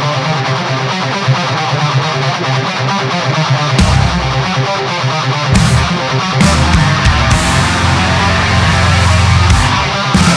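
Loud rock song with distorted electric guitar; bass and drums come in about four seconds in and the full band is playing from about five and a half seconds.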